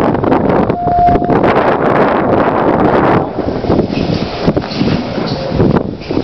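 Wind buffeting the microphone, heaviest for the first three seconds, with a single short steady tone about a second in: the Otis hydraulic elevator's hall chime answering the call button.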